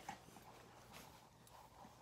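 Near silence: faint room tone, with one tiny tick about a second in.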